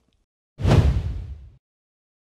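A whoosh sound effect with a deep boom under it, starting sharply about half a second in and fading out over about a second: the transition sting for the logo intro.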